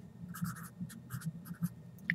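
A green Sharpie felt-tip marker writing on paper, a quick run of short pen strokes as a word is lettered.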